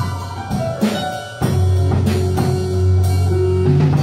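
A live band improvising: electric guitar and keyboard over drums, with a deep held bass note that drops away briefly about a second in and then returns.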